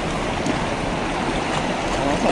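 Steady rushing of a river's current, an even noise with no separate events in it.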